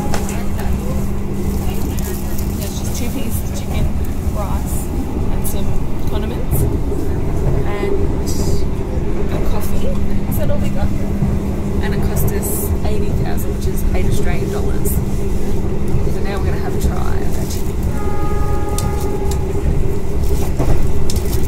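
Interior running noise of a passenger train carriage in motion: a steady low rumble with a constant hum. Scattered small clicks and rustles of a cardboard lunch box and its packets being handled sit on top.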